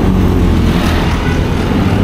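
City street traffic with a motor vehicle's engine running close by, a steady low hum over road noise.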